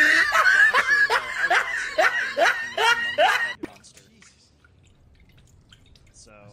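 A person laughing in a run of falling-pitched whoops, about two a second, that stops about three and a half seconds in, leaving only faint background.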